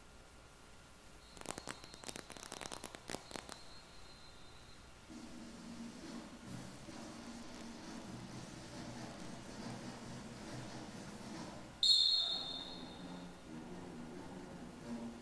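Quiet band music with low held notes begins about five seconds in, after a short run of clicks with a thin high tone. Near the end a sudden sharp, high-pitched burst, the loudest sound, rings out briefly and dies away.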